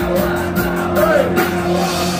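Live punk rock band playing loudly: drum kit, bass, electric guitar and keyboard, with a held note and some singing through the PA.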